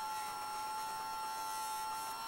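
Dremel-type rotary nail grinder running with a steady high whine, its pitch sagging slightly.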